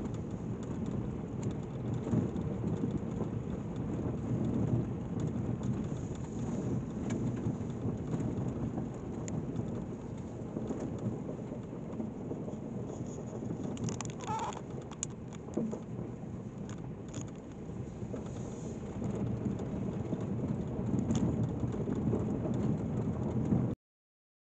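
Vehicle tyres rolling over a gravel road: a steady low rumble with a scatter of small crunches and pops from the stones. It cuts off suddenly just before the end.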